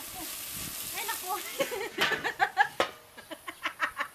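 A woman laughing out loud: a rushing noise at the start gives way to her voice, which breaks into a run of short laughing bursts in the second half that taper off near the end.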